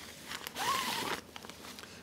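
Zipper on a black soft carry case being pulled open in one quick run lasting under a second, followed by a few faint clicks.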